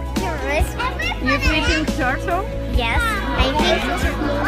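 Several young children's high-pitched voices calling and exclaiming excitedly over background music.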